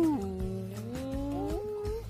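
A voice singing a long, sliding 'ooh' that dips in pitch just after the start and then glides slowly upward, over background music.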